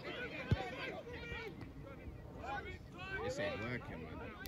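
Players shouting to one another across an outdoor football pitch, with a single sharp thud of the ball being kicked about half a second in.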